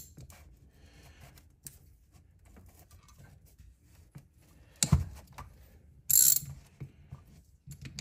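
Socket ratchet wrench loosening the bolts of a Laycock D-type overdrive's filter-housing cover plate: faint scattered clicks, then one sharp crack about five seconds in, and a brief loud burst of ratchet clicking about a second later.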